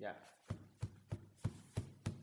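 A fan beating out a steady cheering rhythm by hand: sharp thumps, about three a second, evenly spaced, each with a deep knock to it.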